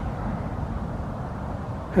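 Steady low outdoor background rumble with no distinct events in it.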